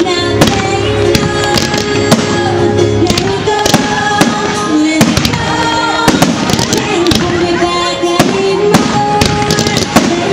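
Fireworks bursting overhead, a rapid irregular run of sharp bangs, several a second, over loud music with sustained notes played for the pyromusical show.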